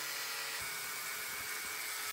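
Flex angle grinder with a thin cutting disc running steadily through rusted sheet steel, a constant high whine with a hiss of cutting.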